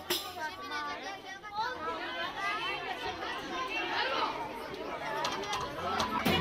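Several people talking over one another in overlapping chatter, with no music. The loud band music cuts out at the start and comes back at the very end.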